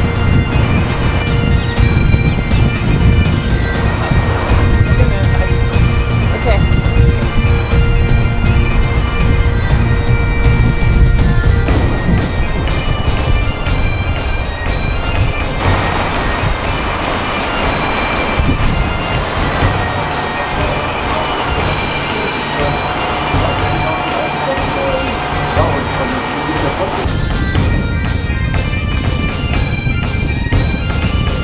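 Background music: a reedy melody over steady held drone notes, with the arrangement changing about twelve seconds in.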